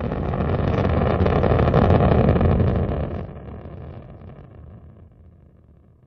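Rocket engine roar: a loud, low rushing noise that builds to its loudest about two seconds in, then fades away steadily over the last few seconds.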